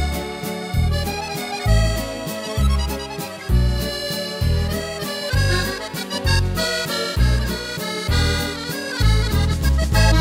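French waltz played on a Yamaha Tyros 4 arranger keyboard with its accordion voice: a musette-style accordion melody over a steady waltz accompaniment, with a low bass note returning evenly a little more than once a second.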